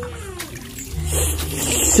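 Water splashing and trickling in a pond, growing louder about halfway through.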